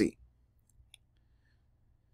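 A quiet pause with two faint clicks close together about a second in: a stylus tapping on a tablet screen as notes are written.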